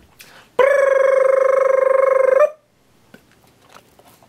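Electronic ringing tone, held at one pitch with a fast flutter, starting about half a second in and lasting about two seconds, then cutting off. A few faint clicks follow.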